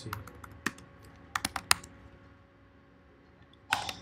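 Typing on a computer keyboard: scattered keystrokes, a quick run of several about a second and a half in, and a louder cluster of keystrokes near the end.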